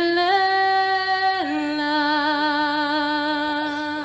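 A young woman singing unaccompanied, holding one long note, then stepping down about a second and a half in to a lower note held with vibrato.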